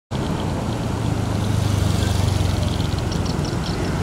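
A steady low mechanical rumble with a hum, as of a motor running.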